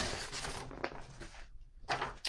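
Paper notes being handled and put aside: a soft rustle with a few faint clicks, dying away about halfway through.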